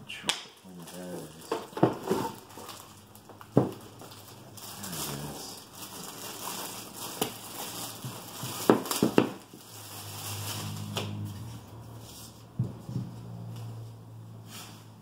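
Thin plastic bag crinkling and rustling as a knife block is unwrapped from it, with several sharp knocks and taps from handling the box and block on a table.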